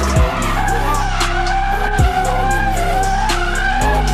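A hip-hop beat with deep kicks that drop in pitch roughly every two seconds, a steady bass line and hi-hats. Mixed in with it, a Nissan Skyline R33 drifts sideways with its tyres squealing.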